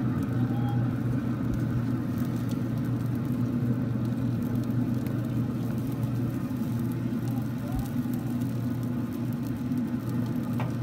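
Steady low mechanical hum with a whir, unchanging throughout: the smoker's fan running while the brisket cooks.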